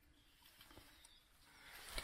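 Near silence, with a few faint soft clicks.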